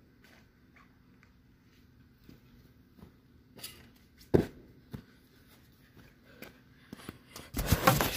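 A mini trampoline bounce, then a sharp thud of feet landing on grass from a front flip, followed by a smaller thump. Near the end come loud rustling and knocking as the phone camera is picked up and handled.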